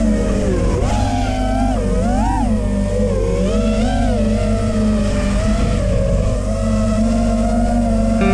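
FPV racing quadcopter's motors and propellers whining in flight, the pitch rising and falling as the throttle changes.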